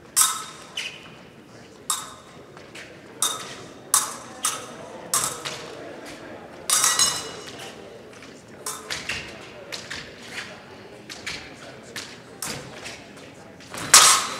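Épée fencing bout: sharp, irregular clacks and rings of steel épée blades striking each other, mixed with fencers' feet thumping and stamping on the metal piste, about a dozen hits with the loudest right at the end.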